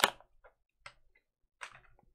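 Sharp clicks and light taps of items being handled at a desk: one sharp click at the start, two small ticks about a second in, and a short rattly cluster near the end.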